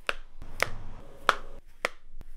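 Samsung Galaxy Z Fold 2 folding phone being snapped shut and open by hand, four sharp snaps roughly evenly spaced about half a second apart.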